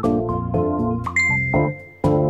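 Light organ-like keyboard music, then a little over a second in a single high chime rings and holds clearly as the music drops away.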